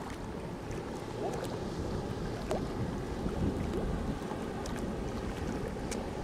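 Wind buffeting the microphone over river water lapping against a concrete embankment, with a few faint clicks.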